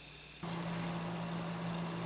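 Quiet room tone. About half a second in, it steps up to a steady low electrical hum with a faint hiss, the background of a new recording take.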